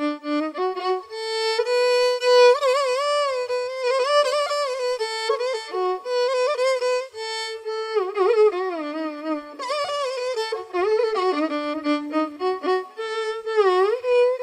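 Solo violin playing a Carnatic-style melody, with notes sliding and wavering in ornamented glides between pitches.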